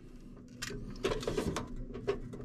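Handling noise from a bathroom exhaust fan's sheet-metal motor plate and blower assembly being lifted and turned in the hands: faint clicks and light rattles starting about half a second in.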